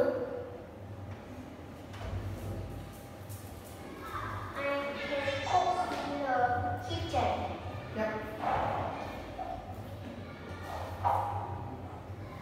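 Speech: a child talking into a headset microphone, with a steady low hum underneath.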